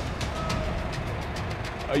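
Engine running steadily at low revs, a continuous low rumble, as heavy machinery holds a load.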